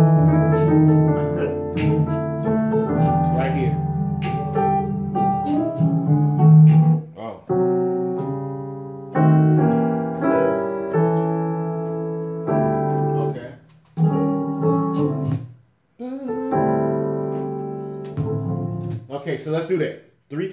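Digital keyboard playing a piano sound in two-handed gospel chords. The first six seconds hold a busy flurry of quick notes over sustained chords. After that come separate block chords, each left to ring for a second or two, with short breaks near the end, walking from the three chord toward the six through a diminished chord.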